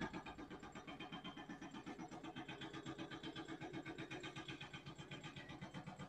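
Faint, steady machine noise pulsing rapidly at about ten pulses a second, like a drill running. What machine it is, is not known.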